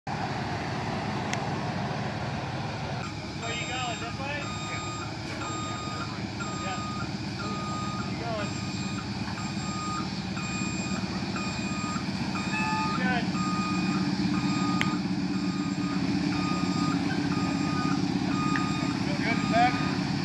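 Fire engine's diesel engine running while it backs up, its reversing alarm beeping evenly at a little over one beep a second, starting a few seconds in. The engine rumble grows louder in the second half as the truck comes closer.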